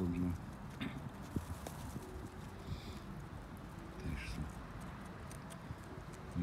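Flock of rock pigeons and jackdaws feeding on grain on snow: a patter of short taps as beaks peck at the ground, with low pigeon coos at the start and again about four seconds in.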